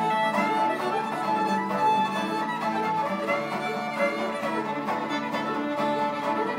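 Bluegrass fiddle playing an instrumental break at a steady level, with acoustic guitar and mandolin picking behind it.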